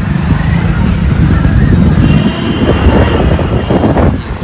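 Loud street traffic noise, with vehicles running close by in a jam. A thin, steady high tone sounds for about a second just past the middle.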